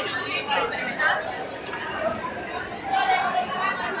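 Chatter of shoppers and vendors: many voices talking over one another in a busy market, with no single voice standing out.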